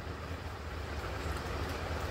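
A steady low rumble with a faint background hiss, with no distinct events.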